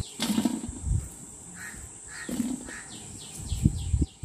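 Birds calling: a string of quick falling chirps repeating throughout, with a few rougher calls in the middle. Two soft knocks, about a second in and near the end, come from dried raw mango pieces being gathered into a steel bowl.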